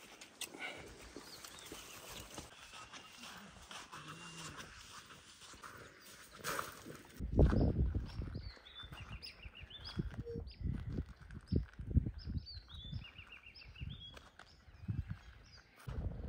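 Wild birds chirping in the bush: faint calls at first, then from about seven seconds in, repeated short high chirping phrases over irregular low thumps and rustles.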